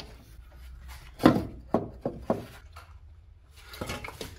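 Hand tools knocking and clicking against metal parts in a car's engine bay: a few separate sharp knocks, the loudest about a second in.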